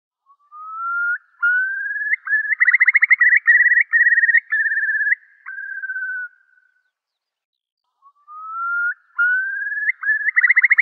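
A bird's clear whistled song: slow rising whistles build into a rapid bubbling trill and then tail off, and the same phrase starts again near the end.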